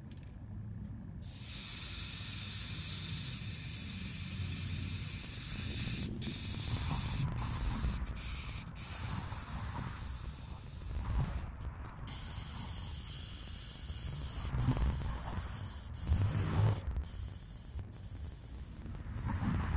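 Air hissing steadily out of a car tyre's valve as the tyre is let down, the stream broken by brief gaps a few times.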